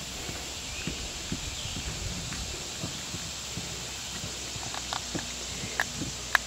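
Gray wolf feeding at ground level and shifting on its feet, making soft irregular crunching and tapping sounds, with a few sharper clicks near the end.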